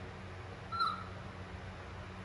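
A baby monkey gives one short, high squeak a little under a second in, over a steady background hum and hiss.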